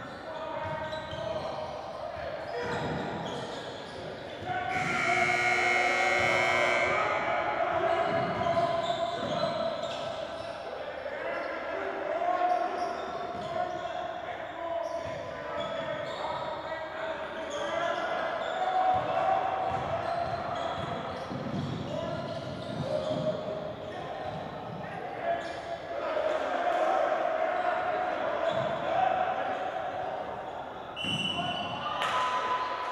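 A basketball dribbled and bouncing on a hardwood court during play, with players' shouts and calls echoing in a large gym.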